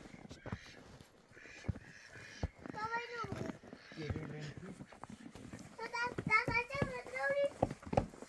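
A small child's high voice in short spoken or called phrases, once about three seconds in and again near the end, with footsteps crunching through snow.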